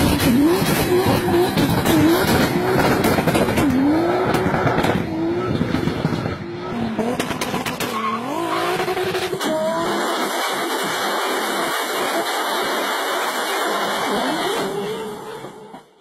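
Sports car engine captioned as a Toyota Supra, revving up through the gears, its pitch climbing and dropping sharply at each shift. About nine and a half seconds in, this gives way to a steady hissing noise with a faint rising engine note near the end, before the sound fades out.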